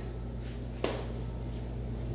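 Steady low hum in a small workshop room, with a single sharp click just under a second in.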